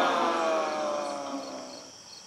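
A drunk man's long, drawn-out groan that slides down in pitch and fades away.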